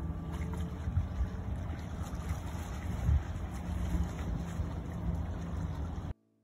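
Wind buffeting a phone's microphone: an irregular low rumble with occasional brief knocks, over the sound of rippling open water.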